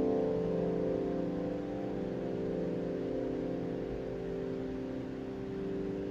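Upright piano's final chord held and ringing out, a steady cluster of notes slowly fading away.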